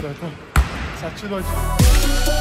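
A basketball bounces once on a hardwood gym floor, a sharp thud with a ringing tail. Background music with a steady beat starts near the end.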